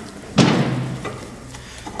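A single dull thump about half a second in, from a brake pad being handled against the wheel's brake assembly while grease is wiped over it.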